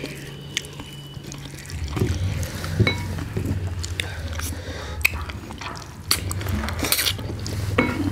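Close-up wet eating sounds: fingers squishing rice into runny dal on a steel plate, with many short lip smacks and mouth clicks, over a low steady hum.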